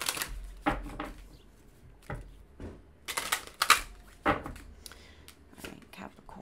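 A deck of oracle cards being shuffled by hand: an irregular run of flicks and slaps of card against card, loudest in a quick cluster around the middle.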